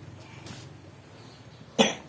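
A single short cough from a woman, sharp and loud, near the end. A softer hiss of noise comes about half a second in.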